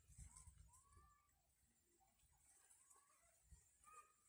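Near silence, with a few faint short calls that arch up and down in pitch.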